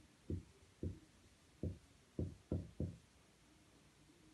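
Marker writing on a white board, heard as a series of short, dull knocks, about six of them at irregular intervals as the letters are stroked out.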